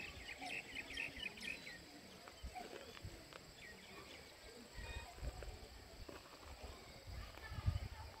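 Outdoor ambience with a small bird chirping rapidly in the first second and a half. Low wind rumble on the microphone comes around five seconds in and again near the end.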